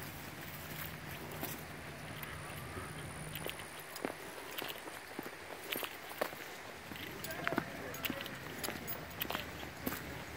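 Footsteps walking along a dirt forest trail strewn with dry leaves: soft, irregular steps.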